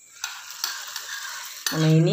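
Hot tempering oil sizzling as it meets a pot of aval pongal, a steady hiss lasting about a second and a half before a voice cuts in near the end.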